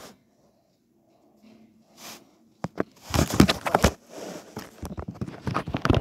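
Rustling and scuffing of plush toys being handled and moved about on carpet. It starts as a dense run of quick scrapes and taps about two and a half seconds in, after a near-silent stretch.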